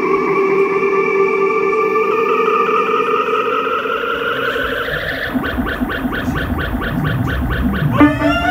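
Live electronic music from synthesizers: sustained, effect-laden synth tones slide slowly upward, then about five seconds in a fast pulsing pattern of about four beats a second comes in over a low bass.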